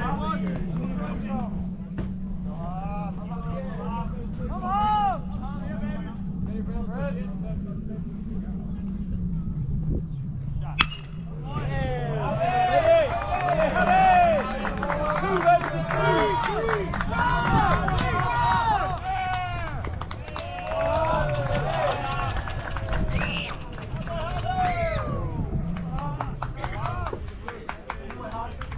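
Ballpark shouting and chatter from players and spectators, with a steady low hum underneath. About eleven seconds in comes a single sharp crack of a bat hitting the ball, and the shouting grows louder after it.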